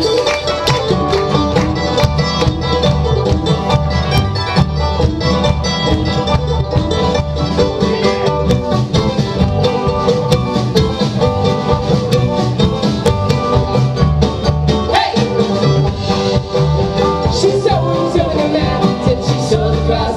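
Live bluegrass-style band playing an instrumental break: banjo, acoustic guitar, mandolin and upright bass picking together at full volume.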